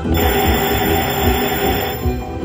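Huff N' More Puff video slot machine playing its electronic game music during a free-games bonus spin. A bright, hissy spin sound effect with high ringing tones starts just after the start and cuts off near the end, as the reels come to rest.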